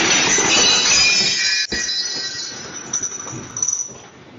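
A room shaking in an earthquake: a loud rattling and clattering noise with high-pitched squealing that starts suddenly and slowly fades, with a few louder knocks near the end.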